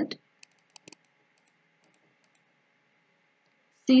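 A few faint, sharp computer mouse clicks close together about a second in, made while stepping a program in a debugger. Then near silence with a faint hiss.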